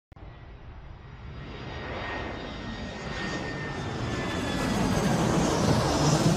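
Intro whoosh sound effect: a rushing noise that swells steadily louder, peaking near the end, with a faint high whistle running through it.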